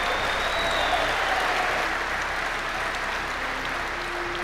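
Audience applauding, a steady clapping that slowly fades a little toward the end.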